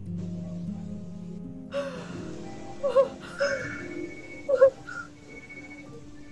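A woman sobbing in a film soundtrack, with several short gasping sobs, the loudest about three and four and a half seconds in, over a soft, sustained music score.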